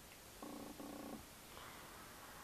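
Near silence, broken by a faint, short pitched murmur lasting under a second, about half a second in, with a brief break in the middle.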